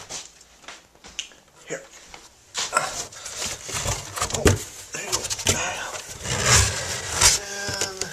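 Rustling and knocking of handling close to the microphone around a cardboard box, starting about two and a half seconds in and running irregularly, with a brief indistinct voice near the end.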